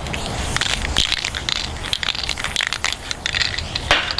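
Irregular crunching and clicking: a rapid, uneven run of sharp clicks over a hissing noise.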